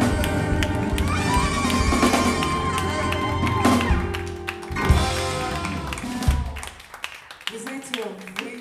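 A live band plays, with trumpet and saxophone holding long notes over electric bass, keyboards and drum kit. The music stops about six seconds in, and a few scattered claps and a voice follow.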